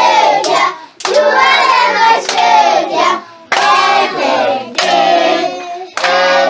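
A group of children singing together in short phrases while clapping their hands in time, with brief breaks between phrases about a second and three and a half seconds in.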